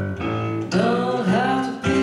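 Live piano accompanying a woman's singing voice: sustained piano chords throughout, with the voice coming in under a second in on long, slightly wavering notes.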